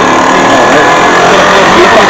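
A steady motor or engine hum holding several fixed tones.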